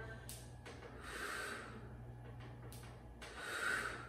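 A woman breathing hard during a Pilates exercise: two audible breaths about two and a half seconds apart, with a few light clicks between them.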